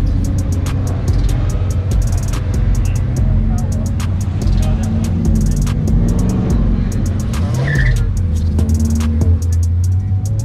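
Several cars driving slowly past one after another, their engines running low and steady, with the pitch shifting as each one rolls by and revs rising near the end. Music with a fast hi-hat beat plays over them.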